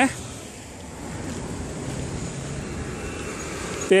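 Steady street noise of road traffic, an even hiss and rumble that rises slightly over the few seconds.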